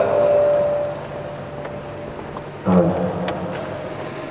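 A man's voice over a microphone and PA in a large, echoing hall. A drawn-out voiced sound fades out within the first second, and a short vocal sound comes about three seconds in, with the hall's background noise between.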